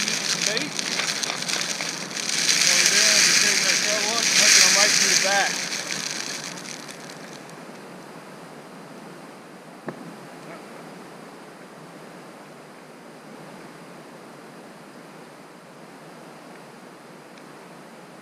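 Strong wind gusting over the microphone, loud and rushing for the first five or six seconds, then settling to a steady lower rush. A single sharp click about ten seconds in.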